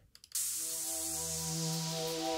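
Electronic song's intro starting playback from Ableton Live about a third of a second in, just after a couple of faint clicks: a held synth chord under a layer of hiss-like white noise, at a steady level.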